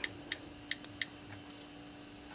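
Faint keyboard clicks from an iPod Touch's on-screen keyboard as letters are typed: about five short ticks, unevenly spaced, over the first second or so, with a faint steady hum behind.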